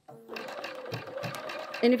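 Bernina 570 electronic sewing machine stitching an applique stitch along a fabric edge. Its motor hum and regular needle strokes start about a third of a second in and run steadily.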